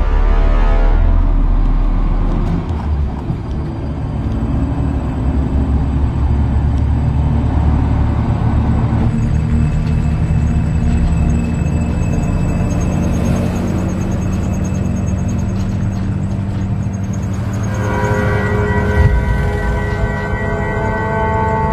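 Tense film background score: a low, sustained, ominous drone, with a brighter sustained chord coming in near the end.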